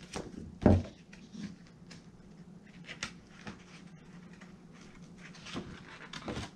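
A large paperback picture book being closed and handled at a table: one solid thump a little under a second in, then soft paper rustles and light taps as it is turned over.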